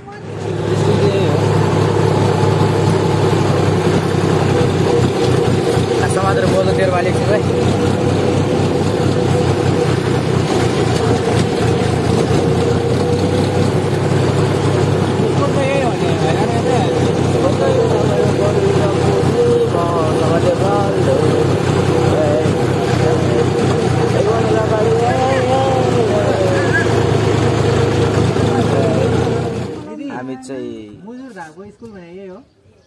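John Deere tractor's diesel engine running steadily while the tractor is driven along, with voices of the riders over it. The engine sound comes in sharply just after the start and drops away just before the end.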